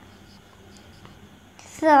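Marker pen faintly scratching on a whiteboard as a line is drawn, with a few light ticks. Near the end a child's voice says "So".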